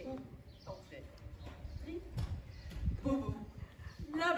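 Faint, indistinct voices speaking outdoors, with a few light taps or knocks over low background noise.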